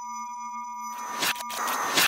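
Synthetic logo sting made of electronic tones. A chord of steady tones holds for about a second, then comes a quick run of sweeps and a hissy, chirping burst that cuts off suddenly at the end.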